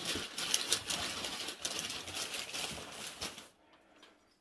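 Hands rummaging through packing material, a dense rustling and crinkling with many small clicks, which stops suddenly about three and a half seconds in.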